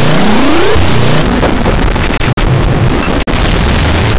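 Harsh, heavily distorted effect-processed audio: a loud noisy wash with a rising sweep in the first second and two brief dropouts later on.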